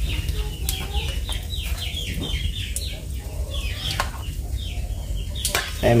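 Chickens clucking and peeping: a run of short falling chirps, several a second, with pauses, over a low steady rumble.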